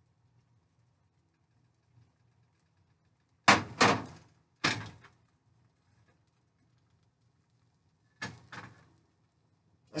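Kitchen utensils knocking against a frying pan on an electric stove: three sharp knocks with a short ringing tail about three and a half to five seconds in, then two softer knocks near the end.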